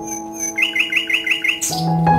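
A bird sings a quick run of about seven repeated chirps over soft background music of sustained, piano-like notes. The run ends in a brief high hiss.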